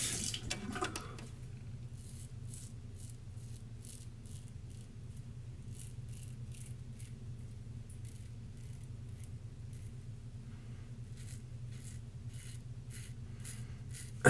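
Double-edge safety razor scraping through about four days of beard stubble on the neck, in short strokes at an irregular two or three a second, over a low steady hum. A running faucet stops about a second in.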